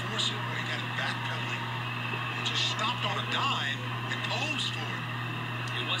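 A TV basketball broadcast playing at low level: a commentator's voice comes and goes faintly over a steady low hum.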